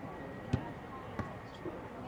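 Two sharp thumps of a soccer ball, about half a second and a little over a second in, as the goalkeeper plays it out of her hands.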